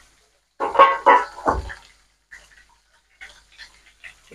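A dog barking three times in quick succession about a second in, followed by faint sizzling of oil frying.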